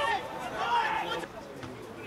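Speech: voices talking, dying down about halfway through to quieter open-air background.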